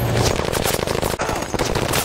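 A light machine gun firing one long continuous burst of automatic fire, a rapid unbroken stream of shots.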